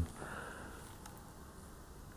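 A man's short, soft sniff, breathing in through the nose just as he stops talking, then quiet room tone.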